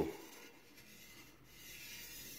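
Faint rubbing of a fingertip on the pressed rim of a titanium spade blade, a soft, even friction sound that grows slightly louder near the end.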